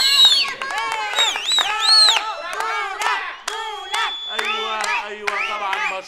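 Several women ululating in high, wavering trills for the first couple of seconds, then cheering and clapping.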